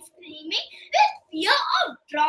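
A girl speaking in short phrases as she tells a story.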